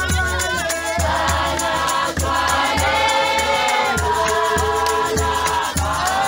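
A church congregation singing a hymn together in many voices, over a steady low beat about twice a second.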